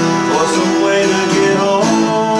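Acoustic guitar music: chords strummed near the start and again near the end, ringing on between them.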